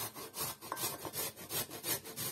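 Raw peeled potato being grated on a stainless steel box grater: a rasping scrape with each stroke, about four to five strokes a second.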